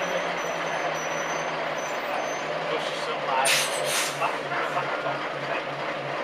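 Bus engine running, heard from inside the passenger cabin, its low note dropping slightly and then pulsing regularly in the second half. A short, sharp hiss of air from the air brakes comes about three and a half seconds in.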